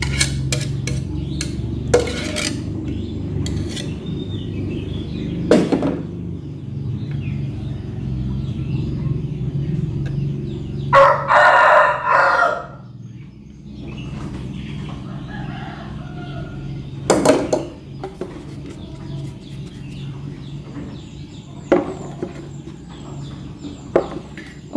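A bird gives one loud call lasting about a second and a half, about halfway through, over a low steady hum that stops just after it. A few sharp knocks are scattered through.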